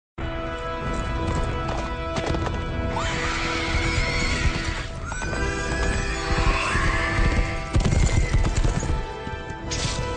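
Horses galloping, their hooves drumming, with repeated whinnies from about three seconds in, over orchestral film music with held notes.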